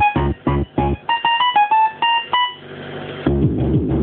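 Yamaha RM1x groovebox playing a fast hardcore techno pattern at 193 BPM: a pumping kick-and-bass beat drops out about a second in, leaving a short high synth melody, then a rising noise sweep builds before the full beat comes back in near the end.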